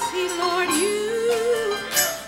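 A woman singing a gospel solo into a microphone, holding a long, wavering note that steps up in pitch partway through.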